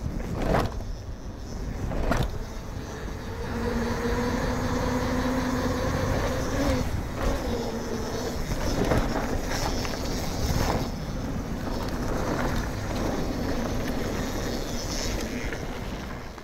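Mountain bike riding fast downhill: its wheels knock hard twice early on as it drops down concrete steps, then a continuous rolling rumble of tyres and rattling bike on pavement and dirt. A steady hum rises and falls slightly for a few seconds around the middle.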